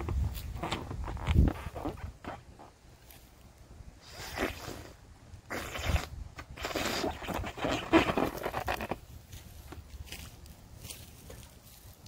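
Breaths blown hard into a large water-filled balloon: a few long blows with pauses between them.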